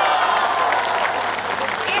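A crowd applauding steadily.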